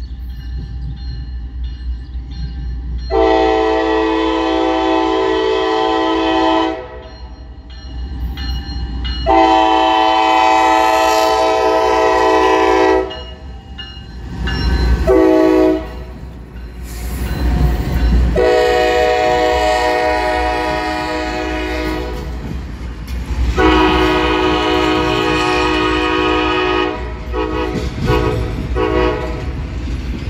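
Norfolk Southern freight locomotive's multi-chime air horn blowing two long blasts, a short one, then a long one held for several seconds: the standard grade-crossing signal. Under it the lead GE diesels rumble past close by, and the clatter of the train follows.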